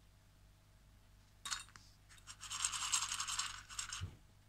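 Rapid scratching close to the microphone: a short scrape about a second and a half in, then a dense run of fast scratches lasting about two seconds that stops just before the end.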